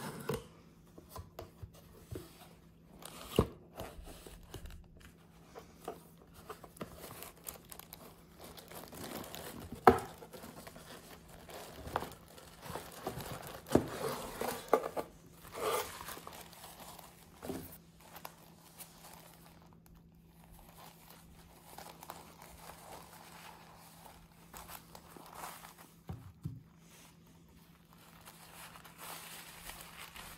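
Paper and cardboard packaging being handled: irregular rustling and crinkling as white wrapping paper is unfolded from a cardboard box, with scattered sharp taps, the loudest about ten seconds in.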